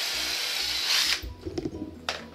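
Power drill running steadily as it bores a small hole into a PVC pipe connector, then stopping suddenly a little past a second in.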